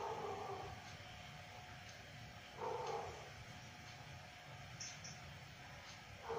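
A person snoring: a loud snore at the start and another about two and a half seconds in, about one every three seconds.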